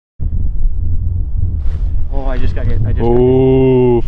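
Wind rumbling on the microphone, then a man's voice from about two seconds in, ending in a drawn-out exclamation held for about a second.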